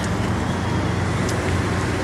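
Steady traffic noise: an even, low rumble of road vehicles with no single distinct event.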